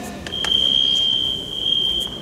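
A couple of sharp clicks, then a single loud, steady, high-pitched tone that starts about a third of a second in and holds unbroken for nearly three seconds.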